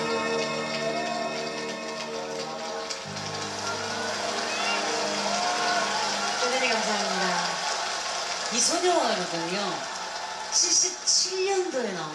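A live band's last held chords ringing out at the end of a song, then voices talking over the hall in the second half.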